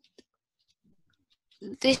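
Faint, soft clicks of origami paper being pressed and creased with a finger, with long quiet gaps between them.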